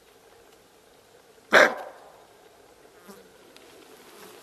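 An animal's single short, loud bark-like call about a second and a half in, over faint steady background hiss.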